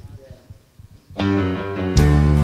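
A brief quiet, then instrumental accompaniment with guitar starts a little over a second in, playing sustained chords as the introduction to a gospel song.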